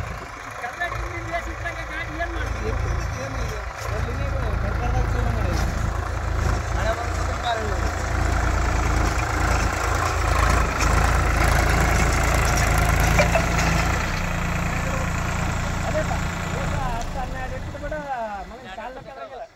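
Sonalika DI 745 III tractor's diesel engine running as the tractor drives in close, louder around ten seconds in, then settling to a steadier note about fourteen seconds in as it comes to a stop.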